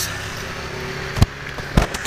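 Two short, sharp knocks about half a second apart, a little past the middle, over a low steady background hum.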